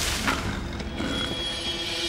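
Tense drama score: sustained, steady tones over a dense low rumble, building suspense.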